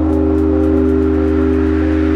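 Elektron Syntakt's SY Bits synth machine playing a sustained ambient chord over a held bass note, with faint, even ticks above it.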